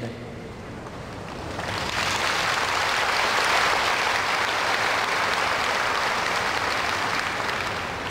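Audience applauding: the clapping swells in over the first two seconds, then holds steady.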